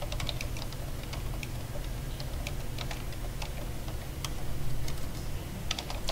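Typing on a computer keyboard: irregular, scattered key clicks over a steady low hum.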